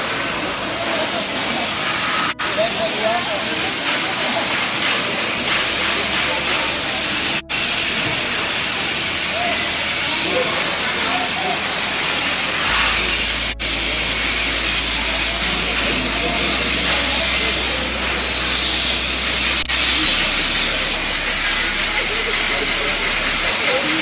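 Steady loud hiss of metalworking in a busy fabrication workshop, with faint voices in the background. The sound cuts out very briefly four times, about every six seconds.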